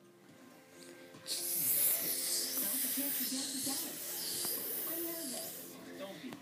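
A person's mouthed 'shhh' hiss imitating a running tap for hand-washing. It starts about a second in and holds steady for about four seconds. Faint TV music and voices play underneath.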